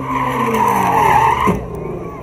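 Ford Mustang engine revving hard under full throttle while its tyres squeal, the engine note sliding down in pitch. The squeal is loudest about a second in, and a short laugh comes near the end.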